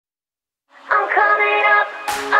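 Opening of a dance-pop song: silent at first, then a sung vocal line comes in just under a second in, with little backing under it.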